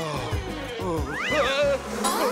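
Animal-like cartoon yowls that rise and fall in pitch, starting about a second in and repeating, over background music.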